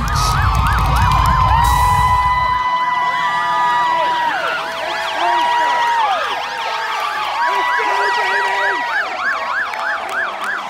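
Several emergency-vehicle sirens sound at once, overlapping. Some wail in long rising and falling sweeps while another yelps fast, about three sweeps a second. For the first couple of seconds the heavy bass of a music track is underneath, and then it cuts off.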